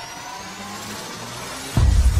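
Electronic logo-intro sound design: faint rising synth sweeps over a low hum, then a sudden heavy bass hit near the end as the logo lands.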